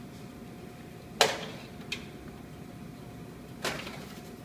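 Metal clanks of a baking sheet of scones going into an oven: a sharp clank about a second in, a light click, then a second clank near the end as the sheet meets the oven's wire rack.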